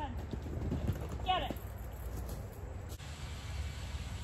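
A dog's paws thud quickly as it runs out of a fabric agility tunnel and across the grass. A short, high voice call comes about a second in.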